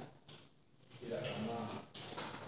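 A brief, quiet, drawn-out voice sound, a hum or murmur, about a second in, in an otherwise quiet room.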